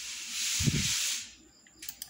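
A brief hissing rush of noise, about a second and a half long, with a dull low thump in its middle, followed by a couple of sharp clicks near the end.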